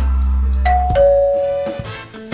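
Two-tone ding-dong doorbell chime: a higher note about two-thirds of a second in, then a lower note that rings out, as the background music's held chord stops.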